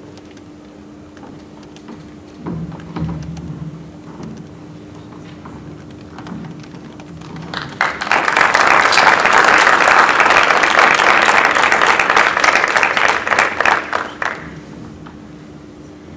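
Audience applauding for about seven seconds, starting about eight seconds in and then dying away, over a steady low hum.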